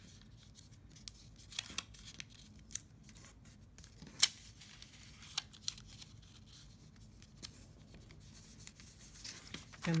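Scored paper being folded into envelope shape by hand: scattered crisp paper crackles and clicks as the flaps are bent and creased, the sharpest about four seconds in.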